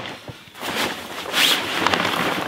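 Dacron mainsail and its fabric sail bag rustling in several swishes as the rolled sail is slid out of the bag.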